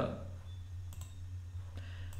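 A few faint clicks from a computer's mouse or keyboard as windows are switched, over a steady low electrical hum.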